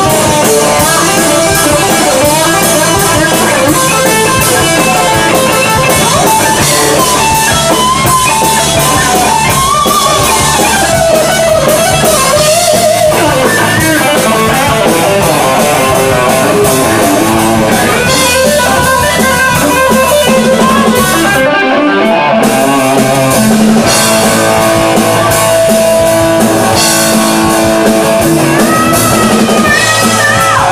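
Live rock band: a Les Paul-style electric guitar playing a lead line with bent notes over drum kit, loud throughout. The band drops out briefly about two-thirds of the way through, and a singer comes in at the very end.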